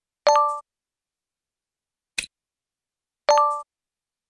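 Animation sound effects: a short bright ding shortly after the start, a quick click about two seconds in, and another ding near the end, each ding marking an answer card snapping into place on the lesson slide.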